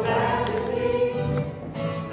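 A church congregation singing a song together, led from the front, with a change of phrase about halfway through.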